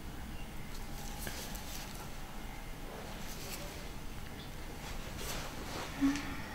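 Quiet room with a low steady hum and a few faint, brief rustles.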